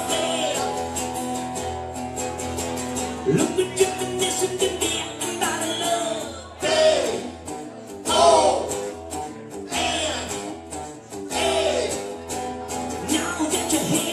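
Live band playing a song with a lead singer, over steady instrumental backing and cymbals.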